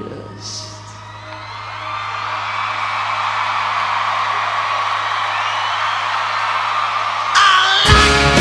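Arena crowd cheering and whooping over a held low note from a rock band, the cheering swelling. Near the end the full band comes back in loudly with guitars and drums.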